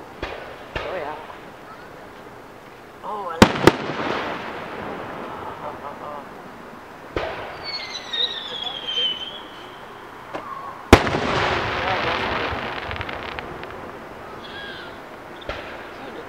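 Aerial fireworks shells bursting: a sharp double bang about three and a half seconds in, a lighter bang around seven seconds, and the loudest bang near eleven seconds, each followed by a long rolling echo. A falling whistle sounds around eight seconds.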